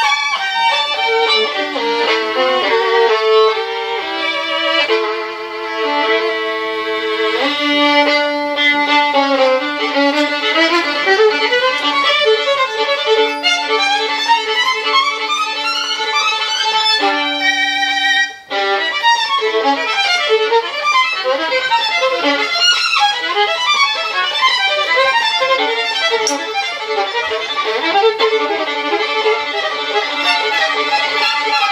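Solo violin, bowed: held notes give way to fast rising runs, with a brief break a little past halfway before quick passages resume.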